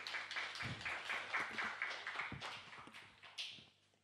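A small group of people applauding with dense, irregular claps that fade out near the end.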